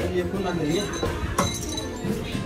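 Indistinct voices in the background, and a single clink of plastic toy dishes about one and a half seconds in.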